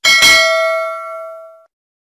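A bell 'ding' sound effect marking the notification bell being switched on: struck once, ringing with several tones together, fading and then cut off after about a second and a half.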